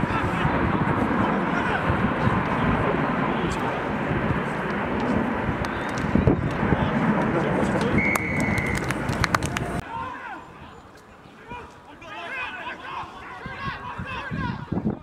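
Rugby referee's whistle: one short, steady blast about eight seconds in, blown for a penalty. It sounds over a loud, rumbling din of voices and field noise, which drops away near the end, leaving players calling out.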